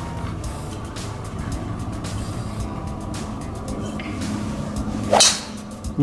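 A driver swing off the tee: about five seconds in, a short whoosh ends in a sharp crack as the clubhead strikes the ball, a solid, well-struck hit. Background music plays throughout.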